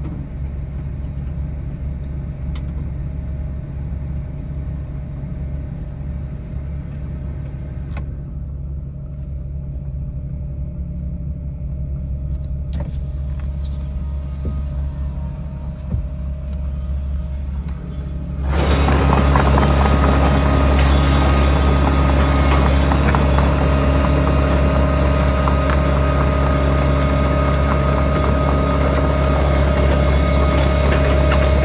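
Case tracked excavator running and moving along a dirt trail: a steady diesel engine drone, muffled as if heard from inside a car cabin. About two-thirds of the way through it suddenly becomes much louder and clearer, with the clatter of its tracks.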